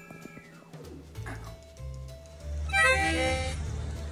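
Acoustic guitar strings ringing, the notes sliding down in pitch just under a second in. A louder, brief wavering pitched sound follows near the three-second mark.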